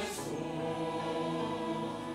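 Large mixed church choir singing a slow anthem in Korean on sustained chords, with string ensemble and piano accompaniment.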